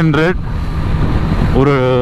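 A man talking over steady wind rush and motorcycle engine and road noise at highway speed, with a pause of about a second in his speech where only the wind and engine noise is heard.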